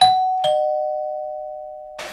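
Two-note 'ding-dong' chime sound effect: a higher note, then a lower one about half a second later, both ringing on and slowly fading.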